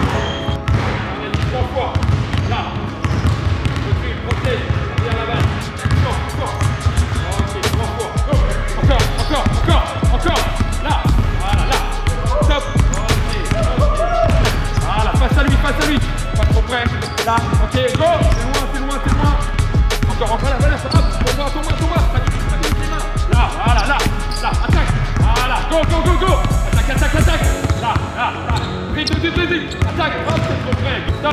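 Basketballs bounced on a hardwood court, a quick run of dribbling bounces, with music playing underneath.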